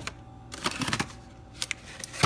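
Light clicks and knocks of plastic food containers and packaging being handled inside a refrigerator: a cluster of small taps from about half a second to a second in, then a couple of sharper clicks later on.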